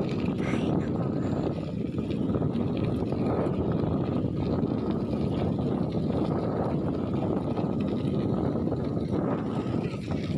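Steady wind rumble on the microphone of a camera carried on a moving bicycle.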